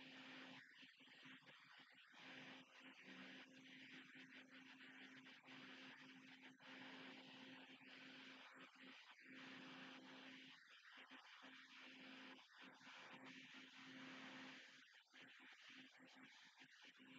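Near silence: faint room tone with a steady low hum and hiss.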